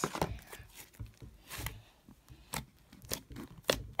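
Large foam-bead slime being stretched and poked by hand, giving irregular sticky pops, clicks and crackles.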